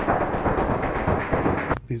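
Omnisphere 2.8 patch "Retro Marching Band Vibes 1" playing a deep, lo-fi percussion sequence resembling a marching band drum corps, sampled from old film and TV recordings. Dense, irregular drum hits with a dull top and no highs; it stops just before the end.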